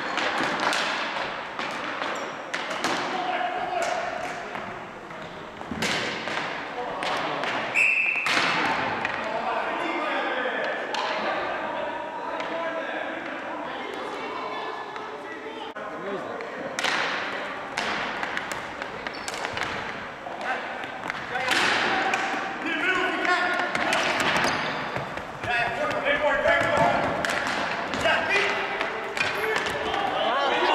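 Ball hockey play in a gymnasium: sharp clacks and thuds of sticks and the ball on the hard floor and boards, repeated throughout and echoing in the hall, with players' indistinct shouts. A short high tone sounds about eight seconds in.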